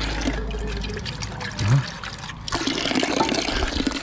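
Water running from an outdoor garden tap into a bowl, the stream splashing steadily as the bowl fills.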